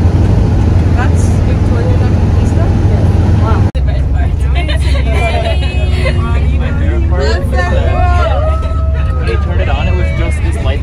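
Steady, loud low rumble of a moving vehicle. After a cut a few seconds in, a group of passengers inside it shout excitedly over the road noise.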